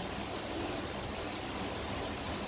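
Steady, even background hiss of the room and recording, with no distinct sound events.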